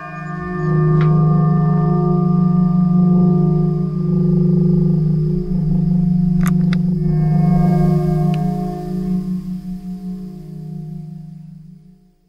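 A large steel circular saw blade struck and left ringing like a bell: a deep, wavering hum with higher overtones, freshly struck again partway through, that slowly dies away toward the end.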